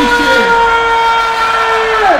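A single long held note through a festival stage's sound system, steady in pitch, sliding down at the very end.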